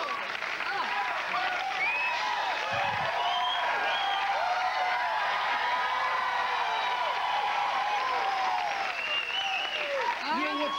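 Studio audience cheering and applauding: steady clapping with many voices whooping and shouting over it. There is a single low thud about three seconds in.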